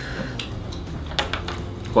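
A few light clicks and taps of wooden chopsticks against plates and crunchy snacks, over a steady low hum from a fan.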